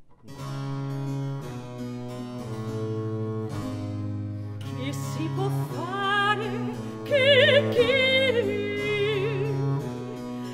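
A Baroque piece starts on violone and harpsichord: low bowed bass notes held under plucked harpsichord chords. About halfway through, a mezzo-soprano voice enters with a rising phrase and sings on with wide vibrato.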